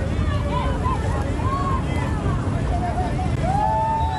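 Wind buffeting a phone microphone on a boat, under scattered shouting from a crowd heckling. Several drawn-out shouted calls, the longest near the end.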